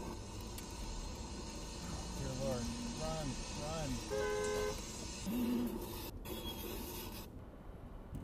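Road and cabin noise from a car moving slowly, with a short car-horn toot of about half a second midway through.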